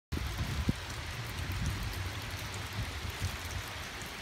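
Water dripping and spattering off wet travertine rock, a steady rain-like patter with a few sharper drips, over a low, uneven rumble.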